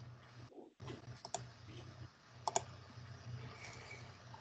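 Faint clicking of a computer keyboard over a low steady hum, heard through a video-call microphone: two quick pairs of clicks, about a second apart.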